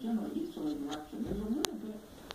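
Indistinct, muffled talking with no clear words, and one sharp click about one and a half seconds in.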